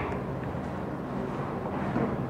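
Steady low room hum, with a sharp keyboard click at the start and a fainter one near the end: laptop keystrokes selecting a line of code.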